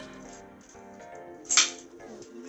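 Background music with a steady melody, and about a second and a half in a single sharp plastic clack as a Connect 4 disc drops into the grid.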